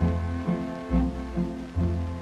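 Orchestral background music: bowed strings over a low bass line, with a deep bass note about once a second.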